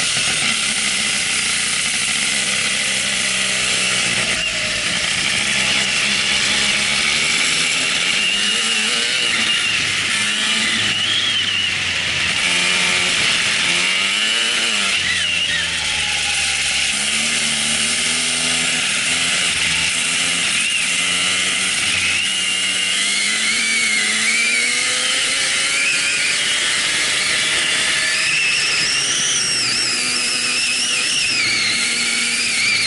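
Onboard sound of a Birel kart's Aixro 50 rotary engine at racing speed, its pitch rising and falling over and over as the driver accelerates out of corners and lifts for the next. There is a long climb in revs near the end.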